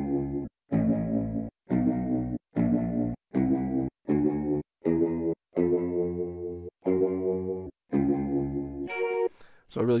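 Sampled ambient guitar chords from the Big Fish Audio Impulse library, played from a keyboard: about ten short chords in a row, each cut off abruptly after under a second.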